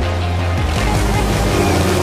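A film soundtrack: dramatic music over a steady rushing engine noise of an aircraft in flight.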